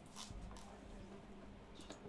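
Near silence: room tone with a faint steady low hum, and a brief faint noise about a quarter second in.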